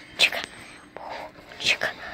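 A child whispering in several short, breathy bursts.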